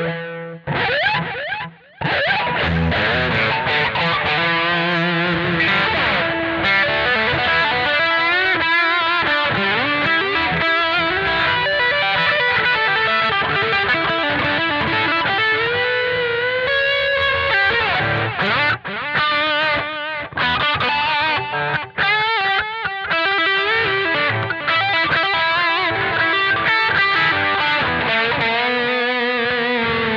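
Instrumental rock music led by distorted electric guitar, its notes bending and wavering. The music drops out briefly about two seconds in.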